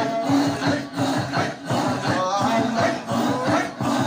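Men's voices chanting together in a Sufi dhikr ('imara), the sung lines riding over a fast, even pulse.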